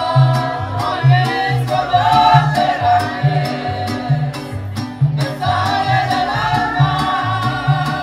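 Mariachi band playing live: violins hold the melody in harmony over a guitarrón bass line alternating notes on the beat, with a sharp strummed rhythm from vihuela and guitar.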